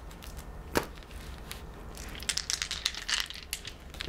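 Astrology dice rattled in cupped hands: a sharp click, then a run of rapid clicking and rattling as they are shaken.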